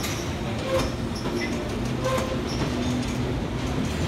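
Bakerloo line 1972 tube stock train moving slowly along the platform: a steady low rumble and motor hum, with the wheels clicking over rail joints about every second and a half.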